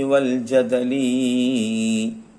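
A man chanting a line of classical Arabic verse in a slow, melodic recitation. His voice wavers in pitch, then holds one long steady note near the end.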